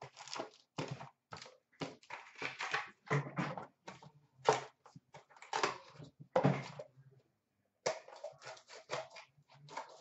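Hands handling cardboard trading-card boxes and packs: an irregular run of rustling, sliding and tapping, with a short quiet gap a little before eight seconds in.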